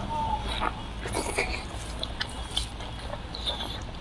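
Close-up wet chewing and mouth sounds of a person eating braised meat, with scattered short soft clicks and smacks.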